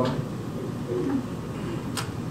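Room tone in a pause, with a few faint, short, low murmurs, and one sharp click near the end.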